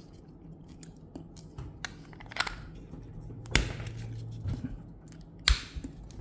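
Handling of a Spec dry-herb vaporizer as its parts are fitted together: small clicks and scrapes, with two sharp knocks, one about three and a half seconds in and one near the end.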